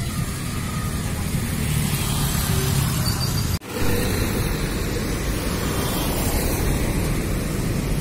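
Road traffic: a steady low rumble of cars and motorcycles moving on a city road. It breaks off for a split second about three and a half seconds in, then carries on.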